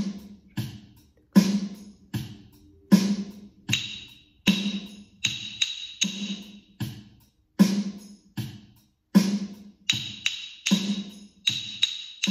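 A steady drum beat keeping time in four, with wooden rhythm sticks clicked together in short rhythm patterns over it. The sticks come in two short bursts, about four seconds in and again near the end.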